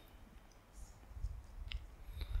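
Faint clicks and soft low bumps over quiet room tone, with two small sharp clicks near the end.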